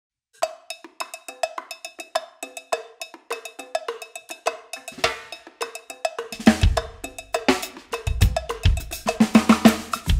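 Cowbell-led percussion groove: a fast, steady rhythm of sharp, ringing metallic strokes. About five seconds in the cymbals come in, and from about six seconds a Pearl drum kit joins with bass drum, snare and Meinl Byzance cymbals, and the music gets louder.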